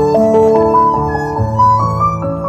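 Stagg electric violin playing a melody of held notes over a backing track with steady bass notes and keyboard chords.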